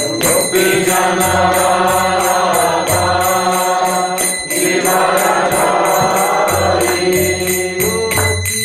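Devotional chanting sung in long held phrases, with small hand cymbals striking a steady beat underneath.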